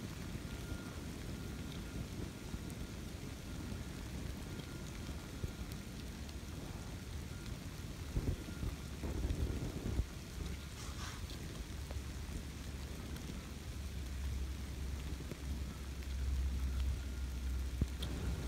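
Steady rain falling on woodland, an even hiss with a low rumble underneath that grows heavier in the second half.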